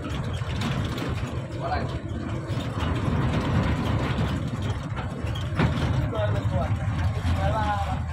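A moving bus heard from inside the passenger cabin: steady engine rumble and road noise, with a single sharp knock about two-thirds of the way through.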